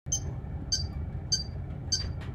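Electronic metronome beeping at 100 beats per minute: four short, high clicks evenly spaced about 0.6 seconds apart.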